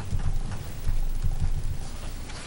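Irregular low thumps and knocks picked up by table microphones, the handling noise of papers and hands moving on the meeting table.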